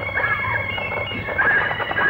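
Film soundtrack with a series of short, high animal-like cries that rise and fall, over background music.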